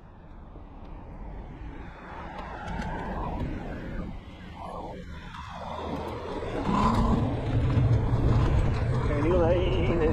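Wind rumbling on the microphone with road and traffic noise during an outdoor scooter ride, growing steadily louder. A voice starts up near the end.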